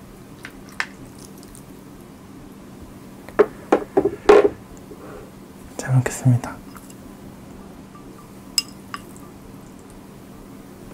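A ladle clinking several times against a glass serving bowl and a ceramic bowl while cold ramen noodles are served out, followed by two short low hums from the eater and one more light clink near the end.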